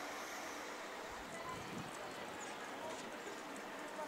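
Steady outdoor car-park and street ambience from a film played back over a hall's sound system, with faint voices in it.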